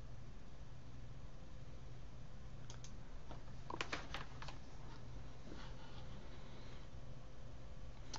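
A few faint, sharp clicks at a computer's keyboard and mouse, clustered about three to four seconds in with one more a little later, over a steady low hum.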